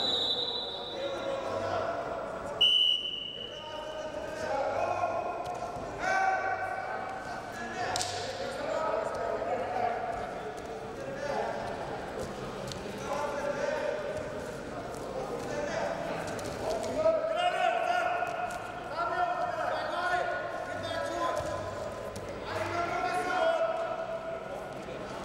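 A referee's whistle blown briefly at the start of a wrestling bout's restart and again, louder, a little under three seconds in, with voices calling out from around the mat and the dull thuds of the wrestlers hand-fighting.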